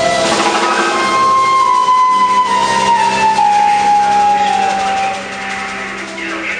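Flute playing a long held note that slowly bends down in pitch, over electric bass accompaniment in a live band. The music gets softer about five seconds in.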